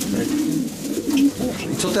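Racing pigeons cooing in the loft, low wavering calls that overlap one another. The birds have just been paired for breeding.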